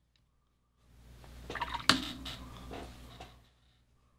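Paintbrush swished in a bucket of rinse water, with a sharp tap against the container near the middle; the splashing swells about a second in and dies away before the end.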